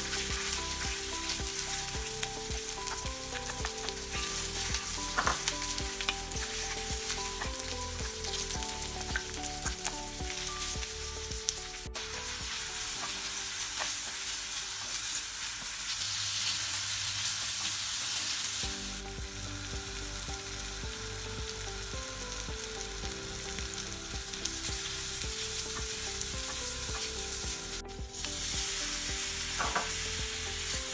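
Chillies, ginger, garlic, curry leaves and then sliced shallots sizzling in hot coconut oil in a clay pot, stirred with a wooden spatula. The sizzle grows brighter for a few seconds about halfway through and drops out briefly twice.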